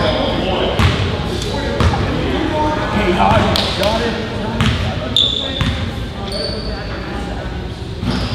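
Basketball bounced on a hardwood gym floor a few times, irregularly about a second apart, echoing in the hall, with a couple of short high sneaker squeaks near the middle over a murmur of voices.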